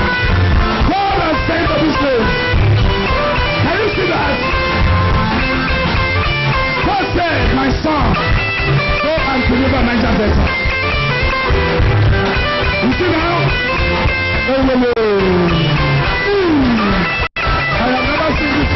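Loud music with guitar and a steady low beat, with voices crying out over it in sliding, falling pitches; the sound drops out for an instant near the end.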